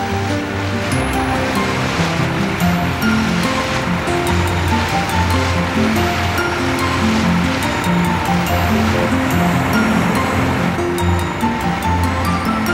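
Background music over a steady rushing, surf-like noise: the sound effect of a cartoon snowplow blade pushing snow.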